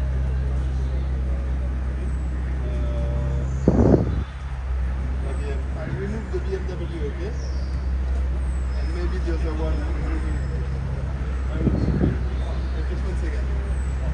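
Pagani hypercar's Mercedes-AMG V12 idling with a steady low hum, broken by two brief louder bursts, about four seconds in and near the end. Bystanders' voices are heard over it.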